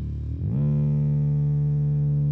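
An amplified instrument holds one steady, low droning note. It dips briefly, then swells back about half a second in and stays on a single pitch.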